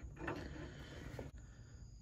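Faint handling of a wheel bearing and grease seal being worked off a front spindle by gloved hands: light rubbing, with a small click at the start and another a little past halfway.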